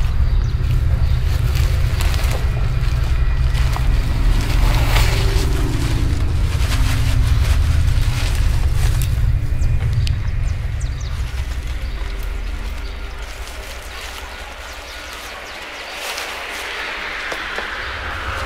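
Wind buffeting an outdoor microphone: a low, uneven rumble with scattered small clicks, easing off after about three-quarters of the way through. A rising hiss comes in near the end.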